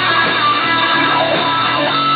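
Electric guitar, a Stratocaster-style guitar played through effects pedals, playing a melodic line of held notes that change pitch every fraction of a second.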